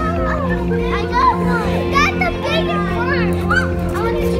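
Children's high, excited voices chattering over background music with sustained low notes.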